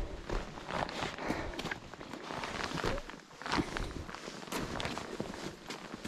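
Footsteps in snow on a steep mountain trail, an uneven run of short crunching steps with some rustle of gear.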